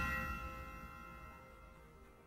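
Ringing tail of a single struck bell-like chime, its several tones fading away over the first second and a half.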